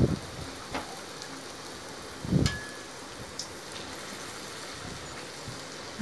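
Hot oil sizzling steadily in a steel kadai as stuffed wheat-flour snacks deep-fry, with a brief low thud about two and a half seconds in.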